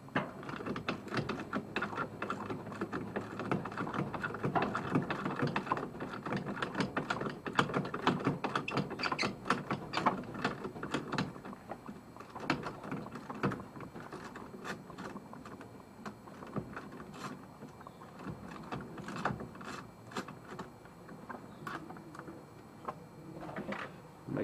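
Socket ratchet clicking in quick runs as it backs off the 15 mm nuts holding the master cylinder to the brake booster. The clicking thins out into shorter, scattered runs in the second half.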